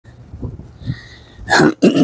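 A man coughing twice, two short loud coughs close together near the end, just before he speaks.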